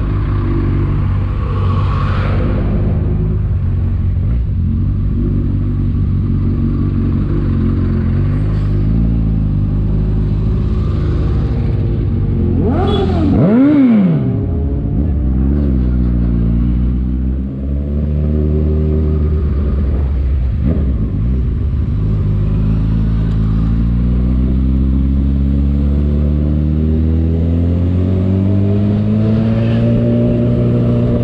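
Honda CB1000R's inline-four engine heard from the rider's seat while riding. It runs steadily, gives one sharp rev that rises and falls about 13 seconds in, then climbs gradually in pitch as the bike accelerates through the last third.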